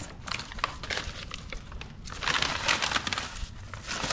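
Paper rustling and crinkling as a child's brown-paper craft is handled and set down, with a louder stretch of crinkling about two seconds in.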